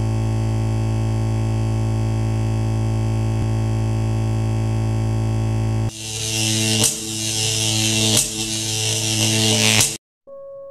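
Electronic intro sound: a steady, low buzzing drone. About six seconds in it gives way to a harsh hiss with shifting tones and three sharp hits about a second and a half apart, then cuts off suddenly.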